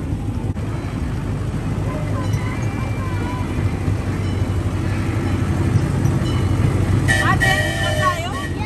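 Park miniature train running with a steady low rumble and hum, heard from on board an open carriage.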